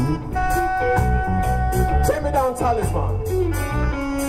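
Live reggae band playing, with electric guitars, bass and drums. A lead line holds one long note until about two seconds in, then bends and wavers downward over the steady bass.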